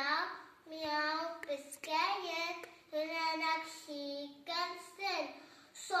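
A young girl singing unaccompanied in short, held phrases with brief pauses between them.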